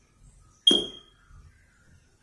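A single short, bright ping about two-thirds of a second in, a sharp strike whose clear ringing tone dies away within about a third of a second.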